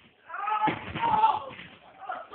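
A high-pitched voice crying out over a scuffle, with a sharp thump about two-thirds of a second in.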